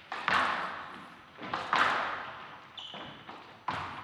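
Squash ball being struck by rackets and hitting the court walls during a rally: three sharp hits about every one and a half to two seconds, each echoing in the hall. A short squeak comes a little before the last hit.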